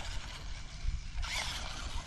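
Battery-powered RC monster truck driving on asphalt, heard faintly under an uneven low rumble, with a brief hiss a little past the middle.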